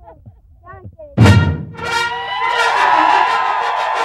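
Faint children's voices, then about a second in a loud booming hit opens a television segment's theme music, full and sustained.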